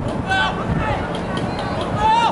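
Brief shouted calls from voices across an outdoor soccer pitch, a short one about half a second in and fainter ones later, over a steady low background rumble.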